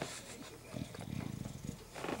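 A bulldog mouthing and chewing with wet clicking mouth noises, and a low throaty rumble for about a second in the middle.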